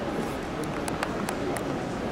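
Indistinct crowd chatter and the general hum of a large exhibition hall. A few sharp clicks, like footsteps on the hard floor, fall in the middle second.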